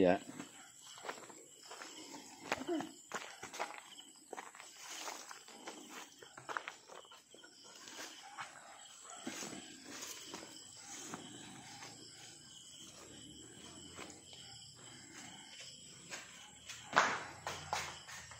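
Footsteps, scuffs and small knocks of people scrambling over a low concrete wall and stepping onto a concrete floor, with faint low voices.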